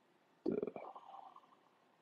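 A man's short, creaky vocal grunt, heard as "duh", about half a second in, trailing off within a second.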